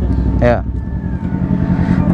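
Motorcycle engine idling steadily, with a faint thin whine over it in the second half.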